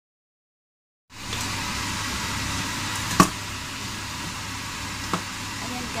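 Shrimp and herbs sizzling as they stir-fry in a wok, over a steady low hum, with two sharp knocks of a utensil against the pan, the louder about three seconds in.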